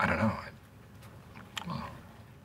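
A man's short throaty, wordless vocal sound, loudest at the start, with a second briefer one about a second and a half in.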